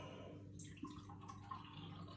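Brown ale poured from a can into a small glass: a faint trickle and splash of liquid starting about half a second in, with a couple of light clicks.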